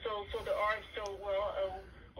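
Only speech: a voice talking over a phone on speakerphone, sounding thin and narrow.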